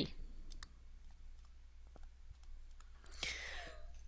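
Faint, irregular clicks and taps of a stylus on a tablet screen while handwriting, over a steady low electrical hum. A soft vocal sound comes near the end.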